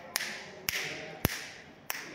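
Four sharp clicks, evenly spaced a little over half a second apart, each with a short ringing tail.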